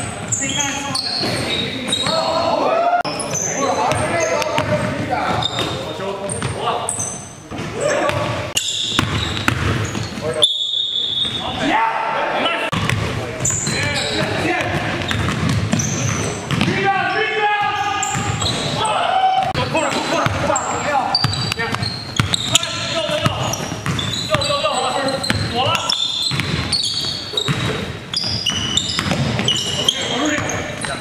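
Live basketball game sound in a large gym: a basketball bouncing on the hardwood court, mixed with indistinct shouts and calls from players. The hall gives it an echo.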